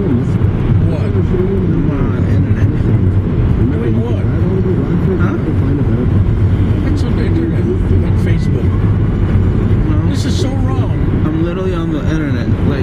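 Steady low road and engine noise inside a moving car's cabin, with indistinct voices over it.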